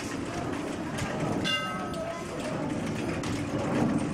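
Steady low rumbling background noise with voices in it, and a short pitched tone about a second and a half in.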